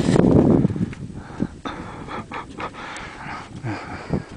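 Heavy panting breaths of a climber close to the microphone, from the effort of climbing at high altitude; loudest in the first second, then softer.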